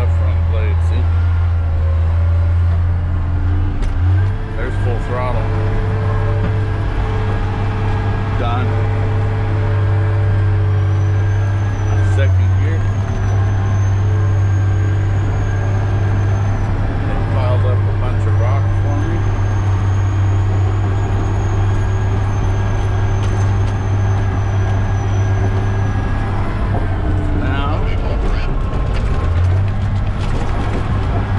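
Caterpillar D10T bulldozer's V12 diesel engine working under load, heard from inside the cab: a steady low drone that sags briefly a few times as the load changes. A faint high whine comes and goes through the middle.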